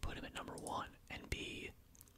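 A man whispering close to the microphone, with a sharp click a little over a second in.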